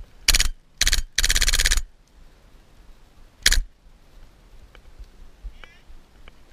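Airsoft rifle firing close by in rapid bursts: two short bursts, then a longer one of about half a second, and one more short burst about three and a half seconds in.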